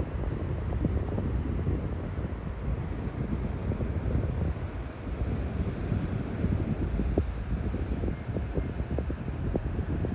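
Wind buffeting the microphone: a steady low rumble with small gusts.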